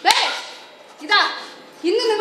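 A sharp crack at the start, then short spoken exclamations from stage actors, their pitch falling, about a second apart.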